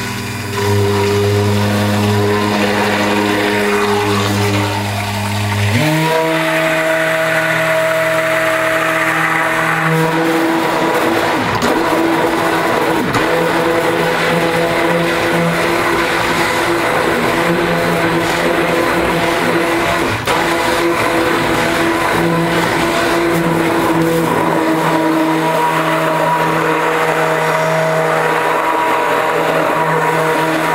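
Handheld stick (immersion) blender running continuously in a stainless steel pot, blending cold-process soap batter. Its steady motor hum steps up in pitch about six seconds in and then holds.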